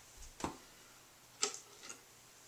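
Two sharp clicks about a second apart, with a fainter one near the end, from a metal screw lid being handled and turned on a glass jar.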